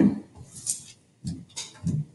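Coins being slid and picked up off a tabletop by hand: a brief scrape, then a few short taps and soft knocks.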